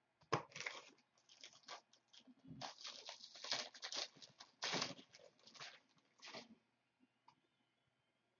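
Trading card pack wrapper being torn open and crumpled by hand: irregular crackly rustling in short bursts.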